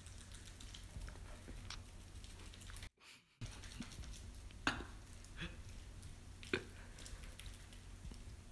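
Faint, wet squishing of a ripe banana being squeezed out of its peel by hand into a plastic bowl, with two short sharp squelches or taps in the second half, over a low steady hum. The sound cuts out completely for about half a second around three seconds in.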